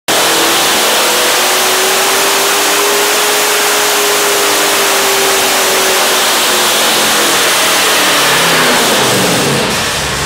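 Twin-turbocharged 427 cubic-inch small-block Chevy running loud and hard on the dyno, its pitch rising slightly and then falling away near the end as the revs come down.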